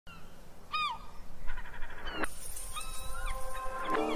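A few short animal calls that glide in pitch. About two seconds in, a rising sweep brings in music with held, steady tones.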